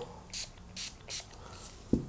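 Three short spritzes from a spray bottle of Dunlop 65 guitar polish and cleaner, about a third of a second apart, followed by a short thump near the end.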